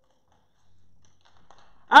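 A pause in speech: near silence with a faint low hum and a few soft clicks. A man's voice starts again right at the end.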